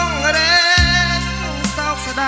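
A Khmer Krom song performed live: a man singing a long, wavering phrase into a microphone over an electronic arranger keyboard's accompaniment of bass and a steady drum beat.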